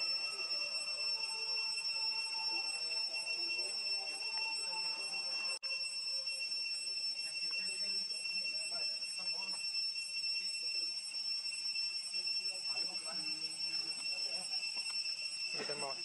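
A steady, high-pitched insect drone holding one pitch throughout, cutting out for an instant about five and a half seconds in.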